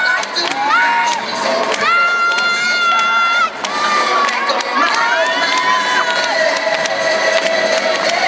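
Audience cheering for dancers, with many high-pitched shouts and calls; one long held call runs from about two seconds in for a second and a half.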